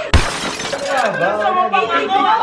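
A sudden loud crash, like glass shattering, with a short hissing tail, just after the start, followed by people talking and laughing.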